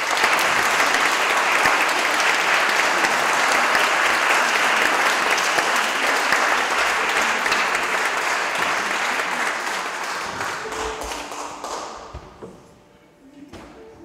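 Audience applauding in a large reverberant hall, dying away about twelve seconds in. A few instrument notes follow near the end.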